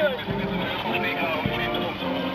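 Outdoor parade noise: several people talking while a small vehicle's engine runs as it leads the procession.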